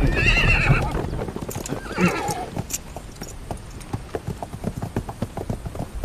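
A carriage horse whinnies at the start and again about two seconds in, then its hooves clop unevenly on the ground.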